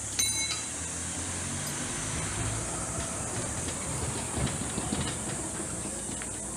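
A thrown throwing knife strikes the wooden target near the start with a sharp clank and a brief metallic ring. After it comes a steady low rumbling mechanical noise, over a constant high insect buzz.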